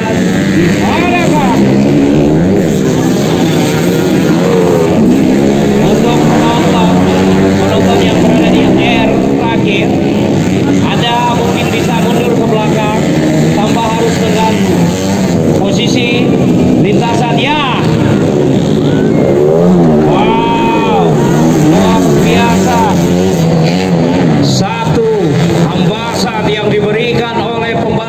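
Several dirt bike engines racing on a motocross track, revving up and down as the bikes pass, with one clear rise and fall in pitch about two-thirds of the way through. Crowd voices run underneath.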